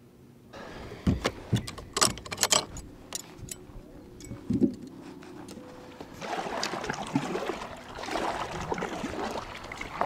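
A few sharp clicks and knocks of fishing gear being handled on a kayak, then, from about six seconds in, a kayak paddle dipping and pulling through the water, with splashing and trickling from each stroke.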